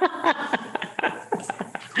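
People laughing in short, broken bursts of voice, mixed with a little speech.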